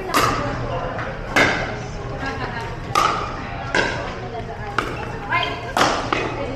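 A pickleball rally: about six sharp pocks of solid paddles striking the plastic ball, spaced roughly a second to a second and a half apart.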